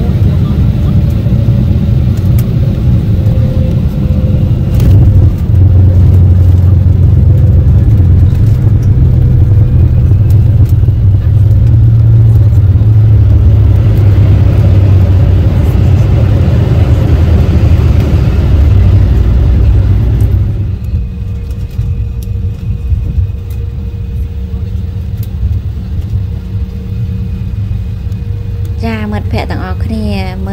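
Jet airliner's landing rollout heard from inside the cabin: a loud, dense low rumble of engines and wheels on the runway, growing louder about five seconds in and easing off about twenty seconds in as the jet slows.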